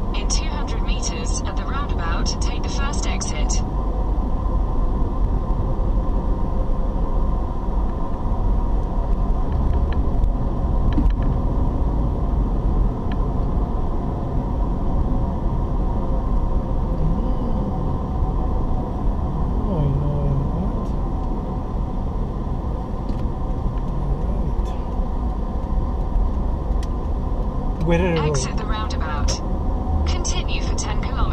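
A car driving, its engine and road noise heard from inside the cabin as a steady rumble. A brief high-pitched pulsing sound comes in for the first few seconds and again near the end.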